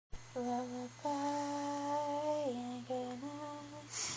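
A person humming a slow lullaby tune: a couple of short notes, then a long held note that drops lower, then a few more short notes.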